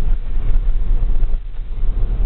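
Steady low rumble of a vehicle's engine and road noise heard from inside the cab while driving along a road.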